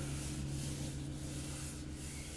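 Terry cloth towel rubbing paste wax onto a wooden table's finish, a steady scrubbing rustle. A steady low hum runs underneath.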